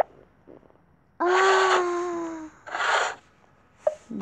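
A girl's long breathy, voiced sigh, slightly falling in pitch, lasting about a second, followed by a shorter unvoiced breath out. There is a light click just before.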